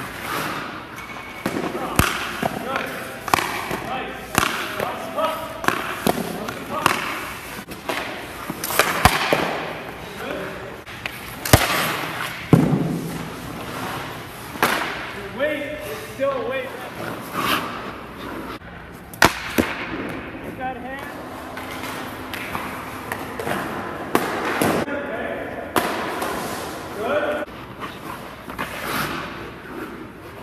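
Ice hockey goalie's skate blades scraping across the ice in repeated pushes and slides, with several sharp knocks scattered through.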